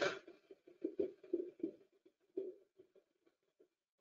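Near silence, with a few faint, brief low sounds during the first three seconds and no steady fan or airflow noise heard.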